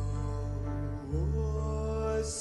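Slow stage-musical song: a man sings a long held line over low sustained bass notes. The bass changes note about a second in, and the voice slides up just after.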